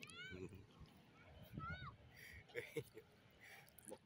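Two short, high-pitched animal calls, each rising then falling in pitch: one right at the start and one about a second and a half in.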